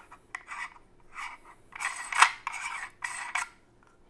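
ZWO short lens adapter being screwed onto the threads of a ZWO electronic filter wheel: several short scrapes of metal threads turning by hand. The loudest comes about two seconds in, with a click.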